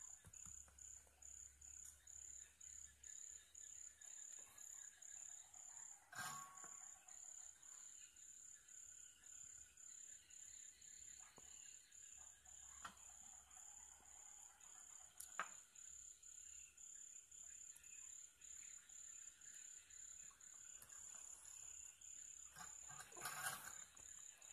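Near silence, with a faint high-pitched chirp repeating evenly about twice a second and a few faint clicks.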